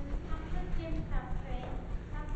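Indistinct talk from several voices, not clearly worded, over low irregular knocking and rumble.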